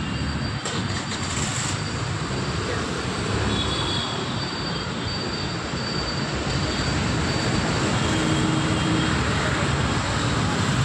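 Steady roar of city street noise, a constant traffic-like rumble that grows a little louder in the second half, with a brief hiss about a second in.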